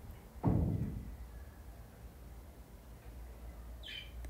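A single dull thump about half a second in, dying away quickly, then faint room tone in a kitchen.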